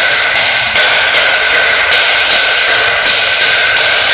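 Loud steady rushing noise with a steady high whine from a machine running in a car service bay, with a few sharp clicks.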